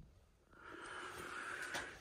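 Faint, steady room noise, preceded by a moment of complete silence in the first half second.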